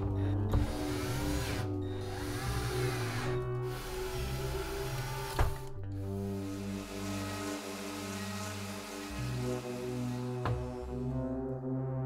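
Cordless drill driving screws into a small wooden box, then boring a hole through a wood block, in runs broken by short pauses, with a sharp click about five and a half seconds in. Synthesizer background music plays throughout.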